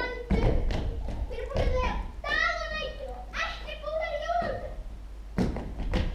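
Children's voices speaking on stage, then a few thuds near the end.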